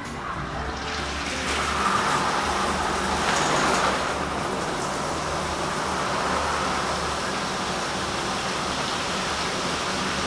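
A steady rushing noise that builds over the first couple of seconds, swells at about two to four seconds in, then holds level.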